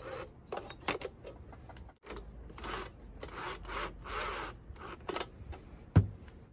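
A screwdriver driving screws into the metal heating-element mount of a turbo broiler lid: a run of short, irregular scraping, ratcheting strokes, broken briefly about two seconds in, with a sharp knock at the very end.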